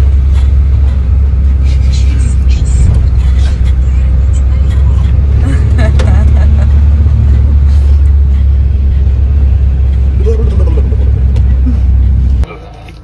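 Loud, steady low rumble of a moving passenger van heard from inside the cabin: engine and road noise, with faint voices under it.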